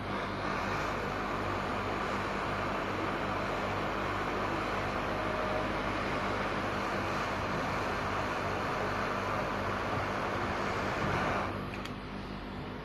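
Hot-air rework nozzle blowing a steady hiss of air over a RAM chip, reflowing its dry solder joints under fresh solder paste. The airflow cuts off shortly before the end.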